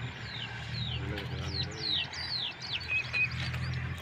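Small birds chirping: many short, quick whistles that slide downward in pitch, several a second, over a steady low hum.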